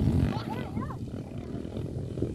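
Dirt bike engines running and revving across the track, with a loud rumble that cuts off just after the start. About half a second in, a brief tone wavers up and down.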